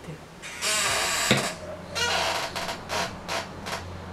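Plastic cosmetic bottle handled, with one sharp click of its cap, followed by several short breathy sniffs as a cherry-scented body product is smelled.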